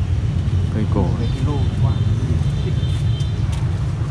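A steady low rumble throughout, with a man speaking two words about a second in and a faint thin high tone running for about two seconds in the middle.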